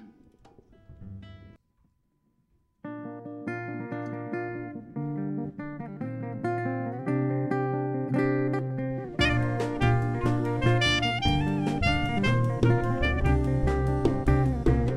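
A jazz tune begins with a solo acoustic-electric guitar playing plucked notes from about three seconds in. About nine seconds in, saxophone, upright bass and drums join and the music grows louder.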